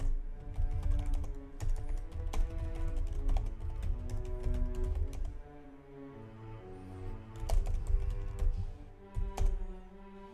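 Typing on a computer keyboard: runs of clicking keystrokes, with a pause of a second or two in the middle. Soft background music with held notes plays throughout.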